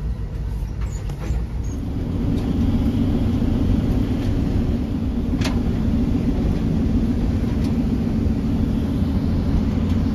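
Road noise inside a moving car: a steady low rumble of tyres and engine, growing a little louder about two seconds in. A single sharp click about halfway through.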